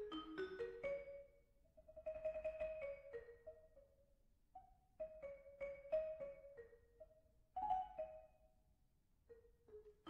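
Vibraphone played solo with mallets: short phrases of struck notes that ring on, separated by brief pauses of a second or so.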